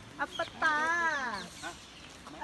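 A chicken calling: a few short clucks, then one long wavering call that drops in pitch as it ends.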